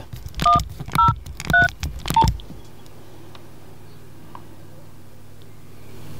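Nokia 6150 mobile phone keypad being pressed to dial: three short two-tone key beeps, each with a click, in the first two seconds, then one single lower beep. After that only a faint steady hiss while the call is placed.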